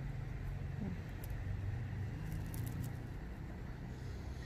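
A few faint, short crackles as fingers pick dry roots and old leaf bases off the stem of a rosette succulent being readied for repotting, over a steady low rumble.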